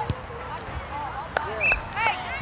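A soccer ball kicked on an artificial-turf pitch: a sharp thud just after the start and a couple more short knocks later, heard over overlapping voices calling out from the players and spectators.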